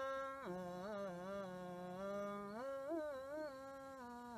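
A man's solo voice singing Ethiopian Orthodox liturgical chant (zema): one long melismatic phrase held on a vowel, with wavering ornaments. It drops lower about half a second in and climbs back up in the last part.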